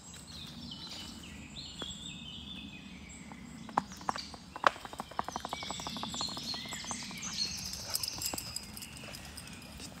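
Songbirds singing and calling in woodland. About four seconds in there are a few sharp knocks, then a rapid, even run of taps, about ten a second, lasting about two seconds, all over a steady low rumble.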